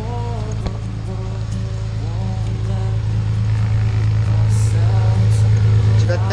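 Light single-engine jump plane's piston engine and propeller running as it taxis closer, a steady low hum that grows louder, under background music.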